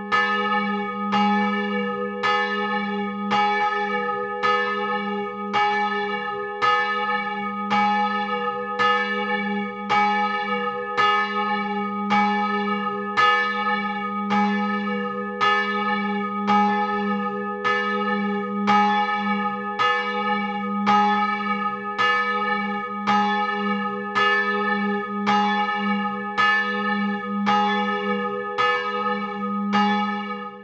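A single bronze church bell ringing on its own in the belfry, struck by its clapper about once a second in a steady, even rhythm, each stroke overlapping the hum of the last.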